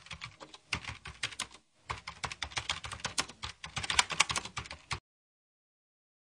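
Rapid clicking of keyboard typing, a sound effect laid over text being typed out on screen. It breaks off briefly about a second and a half in and stops about five seconds in.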